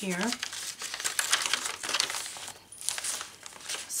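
Paper crinkling and rustling as the layered pages of a handmade journal are turned and handled, with many small irregular crackles and a brief lull about two and a half seconds in.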